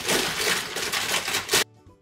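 A heap of plastic and metal lipstick and lip-gloss tubes pouring out of a fabric bin onto a sheet, rattling and clattering against each other for about a second and a half, then cut off suddenly.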